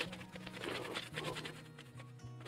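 Scrubber pad rubbed quickly back and forth over anodized titanium strips wet with etching solution, a run of rapid scratchy strokes that opens with a sharp click; the scrubbing is stripping the blue anodized layer off the metal.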